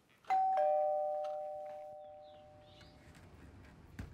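Two-tone doorbell chime: a higher ding followed a quarter second later by a lower dong, both ringing out and fading away over about two and a half seconds.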